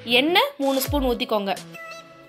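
A person's voice speaking in gliding tones, with background music that shows through as held notes near the end.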